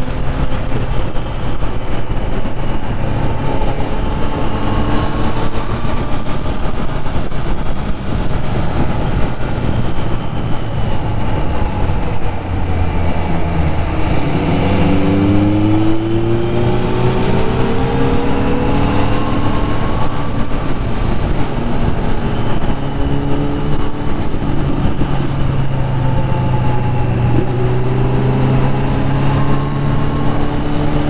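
Triumph Trident 660 three-cylinder engine running on the move, heard from the rider's seat with wind noise. Partway through the engine note drops off, then climbs in pitch for several seconds as the bike accelerates, before settling to a steady note again.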